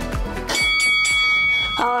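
Upbeat workout dance music with a steady beat cuts off about half a second in, replaced by a bell-like interval-timer chime held for just over a second, marking the end of the work interval. A woman's voice begins just at the end.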